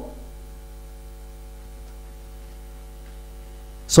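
Steady electrical mains hum picked up by the recording: a low buzz with a stack of steady, even overtones. A man's voice comes back right at the end.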